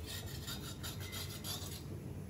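Flat metal spatula scraping and pressing a roti against an iron tawa, a run of short scraping strokes.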